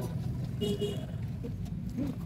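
Outdoor street-market background: a steady low rumble with faint voices of people nearby.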